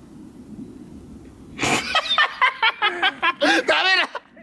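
Young men bursting into loud laughter about one and a half seconds in, after a quieter stretch, the laughter coming in quick, choppy bursts.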